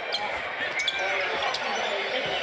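Court sounds of a basketball game in an arena: the ball and players' sneakers on the hardwood floor over a steady wash of crowd noise.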